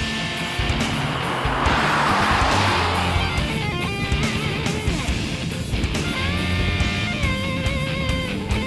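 Guitar-led background music, with the whoosh of the Yokohama AERO-Y electric concept car passing close by about two seconds in: tyre and wind noise only, with no engine note.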